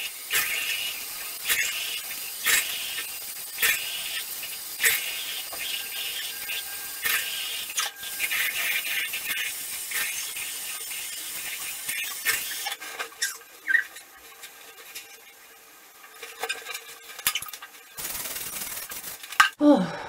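A bathroom tap runs into the sink while she splashes water onto her face and rubs off a dried clay face mask. The running water stops about two-thirds of the way through, then runs again briefly near the end.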